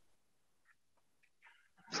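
Near silence in a pause of a video-call conversation, with a man's voice starting just at the end.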